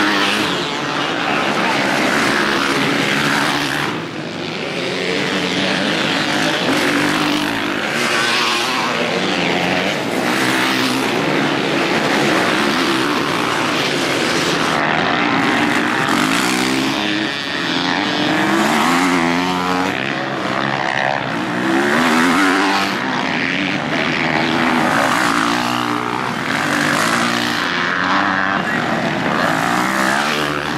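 Motocross dirt bike engines revving hard, their pitch climbing and dropping again and again with throttle and gear changes, as several bikes race through a corner one after another.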